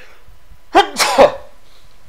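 A man coughing into his cupped hands: a short, loud fit of two or three coughs about a second in.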